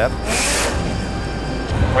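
Pit-stop work on a Porsche GTE race car: a short hissing burst from a pneumatic air tool about half a second in, then a low steady engine note that comes in near the end.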